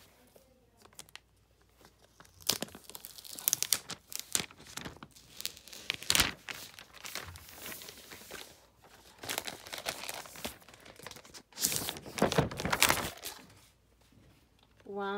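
Packaging crinkling and rustling in irregular bursts as a new laptop is handled and unwrapped from its box, starting about two seconds in.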